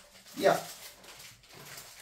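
Speech only: a single short spoken "yeah" about half a second in, then faint room noise.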